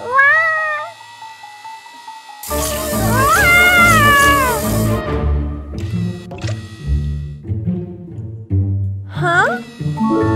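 Cartoon cat meowing three times: a short meow at the start, a longer arching meow about three seconds in over a loud rushing noise, and a quick rising meow near the end, with light background music underneath.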